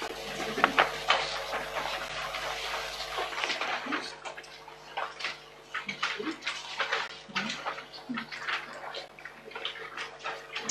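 Paper rustling as sheets and booklet pages are leafed through: an irregular run of soft crackles and flicks.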